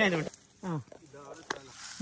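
A man's voice speaking a word or two, with short quiet gaps and a single sharp click about one and a half seconds in.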